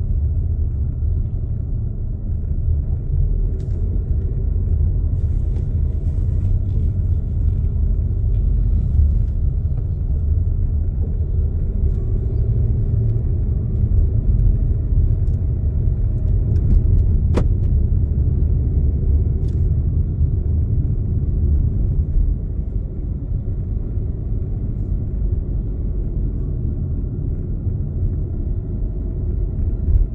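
Inside a moving car's cabin: a steady low rumble of engine and road noise while driving slowly through town, with a single sharp click a little past halfway.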